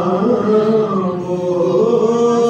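A man singing an Urdu naat solo, holding long notes that bend slightly in pitch.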